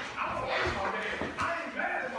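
Indistinct voices talking in a large, echoing gym room, with a couple of short knocks and shuffles of bodies grappling on the wrestling mat.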